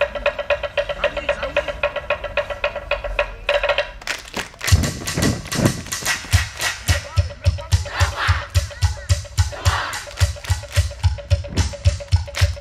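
Samoan group dance music: a fast, even roll on wooden percussion, then about four seconds in a steady rhythm of deep thumps and sharp claps and slaps from the seated dancers. Voices chant or call out over it near the middle.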